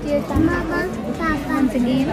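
A woman speaking, with children's voices around her.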